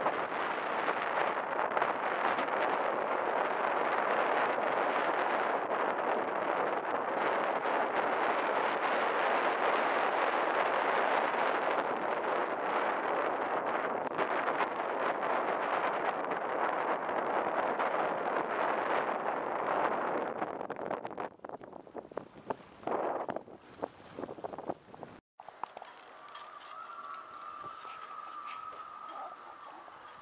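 Steady wind noise on the microphone aboard a small sailboat under sail, with water rushing past, for about twenty seconds before it falls away. After a sudden cut a few seconds later there is a quieter stretch with a faint steady tone.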